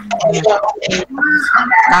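A rooster crowing: one long drawn-out call starting about a second in, with a man's voice speaking over it.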